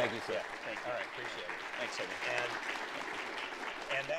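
Audience applauding steadily, with a laugh and faint talk from the stage over it.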